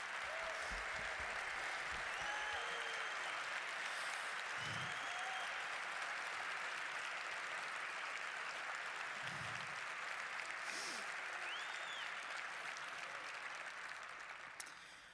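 Large audience applauding steadily, with a few faint calls over the clapping, tapering off at the end.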